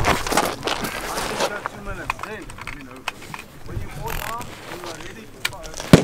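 Short knocks and clatter of a rifle shooter's gear as he moves and gets into position, with faint voices behind. One sharp, loud bang comes just before the end.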